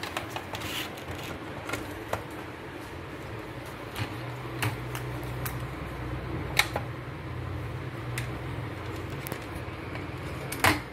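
Scattered light clicks and taps of an opened LED TV's plastic backlight sheets and parts being handled. A low steady hum comes in about four seconds in and fades out near the end.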